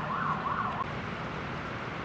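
Emergency vehicle siren in a fast rising-and-falling yelp, about three wails a second, cutting off under a second in, over a steady background hiss.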